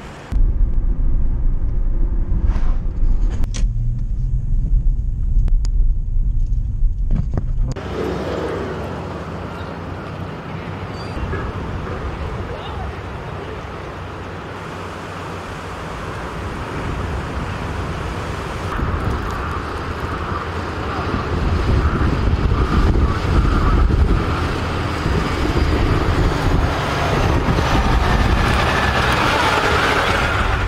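A loud deep rumble for the first eight seconds. It then gives way to the steady mixed noise of road traffic and vehicle engines, which grows louder over the last ten seconds.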